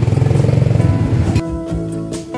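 Loud, steady low rumble of a vehicle engine in street noise, cut off suddenly about one and a half seconds in, when plucked guitar background music begins.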